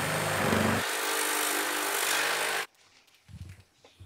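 Handheld power drill running steadily, then stopping abruptly a little under three seconds in.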